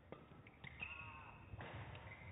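Badminton rally: a couple of sharp racket strikes on the shuttlecock, then a long high squeak of a court shoe on the floor mat from about halfway in.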